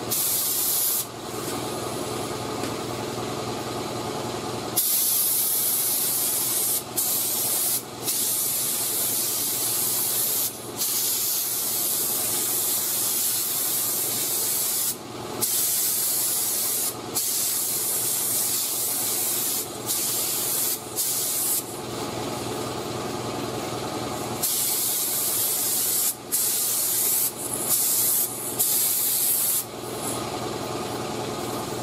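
3M Performance gravity-feed spray gun hissing steadily as it lays a wet coat of clear on a panel. The hiss breaks off briefly about a dozen times, every few seconds, as the trigger is let off between passes.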